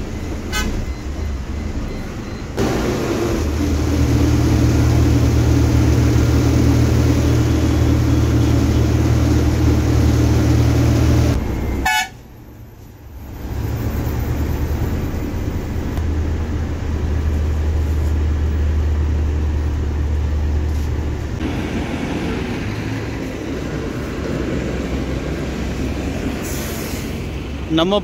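Coach bus engine and road noise heard from inside the cabin while driving on a highway, a steady low drone with vehicle horns sounding. The sound drops away suddenly for a second or two about twelve seconds in, then the drone resumes.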